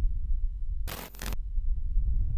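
Sound effects for an intro logo: a deep bass rumble, with a short, bright, click-like burst about a second in.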